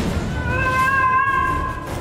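Patient monitor's steady flatline tone, starting about half a second in and held for about a second and a half, over dramatic background music.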